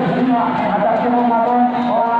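A man's voice chanting over a loudspeaker in long held notes, one pitch sustained for up to a second before moving on.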